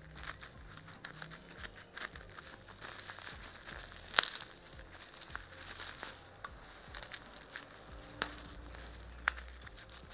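Plastic parcel wrapping crinkling and tearing as it is cut open with scissors and pulled off, in a string of irregular crackles with one loud sharp snap about four seconds in.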